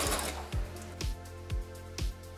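A domestic sewing machine stitching elastic stops about a third of a second in. Background music with a steady beat, about two beats a second, carries on after it.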